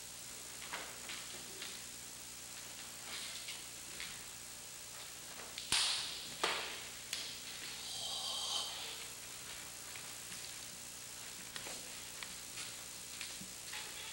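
Faint cloth swishes and snaps of a karate gi and bare feet shifting on a wooden floor as a man performs a kata's strikes and stance changes, with two sharper snaps close together about six seconds in.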